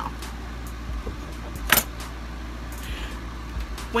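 Steady low hum with one sharp click a little under two seconds in, and a few faint ticks around it.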